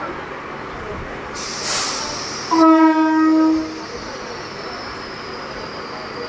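Mumbai suburban EMU local's horn sounding once for a little over a second, just after a short hiss of air, as the train begins to pull out. A faint high whine falls slowly afterwards.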